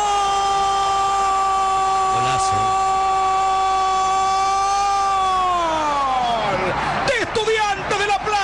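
A television football commentator's long held goal shout: one steady, high note for about five seconds that then slides down in pitch and fades. Quick excited shouting follows near the end.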